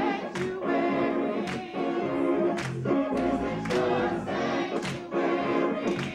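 Church choir singing a gospel song together, with hand claps on a steady beat about once a second.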